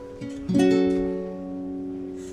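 Classical guitar strumming a chord about half a second in, then letting it ring and slowly fade.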